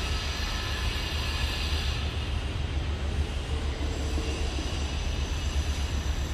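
Steady outdoor background noise: a low rumble with a hiss above it, a little brighter in the first two seconds.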